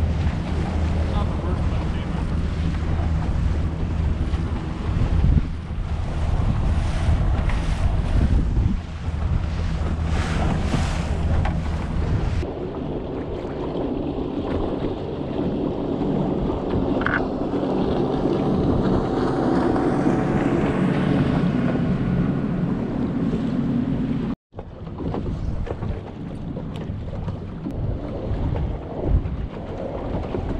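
A boat's motor running underway across choppy water, with wind buffeting the microphone. The sound changes abruptly about twelve seconds in and drops out for an instant near the 24-second mark, after which wind and water noise carry on.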